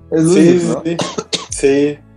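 A man's voice speaking, broken about a second in by a few short, sharp cough-like bursts.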